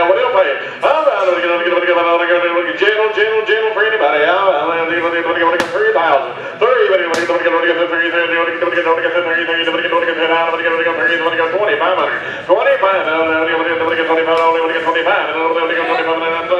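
Livestock auctioneer's chant calling bids on a mule: long rapid runs held on a nearly steady sing-song pitch, broken by short breaths every few seconds.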